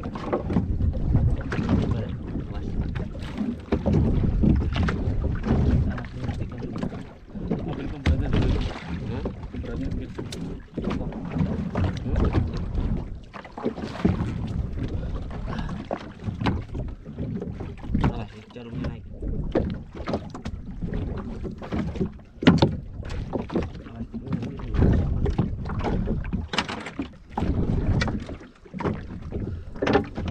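Wind buffeting the microphone and choppy sea water sloshing and slapping against a small open boat's hull, with scattered knocks throughout.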